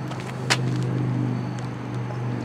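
A steady low mechanical hum, like a running engine or motor, with a single sharp click about half a second in.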